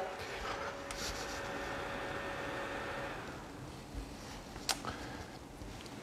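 Quiet kitchen room tone: a low steady hiss with a faint thin whine for the first three seconds or so, and a couple of light clicks about three-quarters of the way through.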